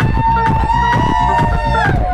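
Live techno at club volume: a steady kick-drum beat under a held synth note with bright overtones, which slides up at the start and drops away near the end.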